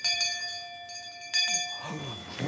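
A bell struck twice, about a second and a half apart, each strike ringing on with several clear tones.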